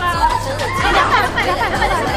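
Young women talking excitedly over background music with a steady beat.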